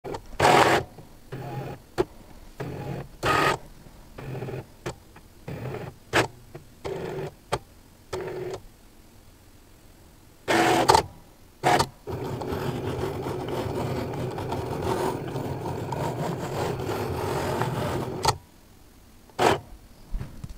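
Cricut Explore 3 cutting machine's motors whirring in a string of short stop-start moves of the carriage and mat, as it reads the print-then-cut registration border, then running steadily for about six seconds before another short move near the end.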